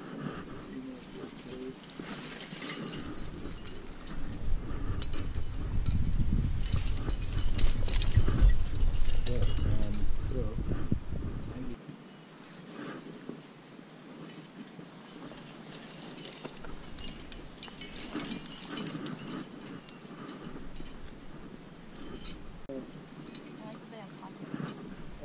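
Metal climbing rack of cams, nuts and carabiners clinking and jingling on a harness as a climber moves up a granite crack, with a louder stretch of low rumbling and rubbing in the middle.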